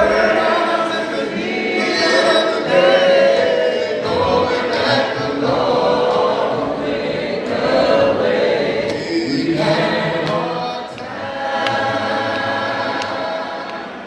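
A group of voices singing a gospel hymn together without instruments, in long held notes.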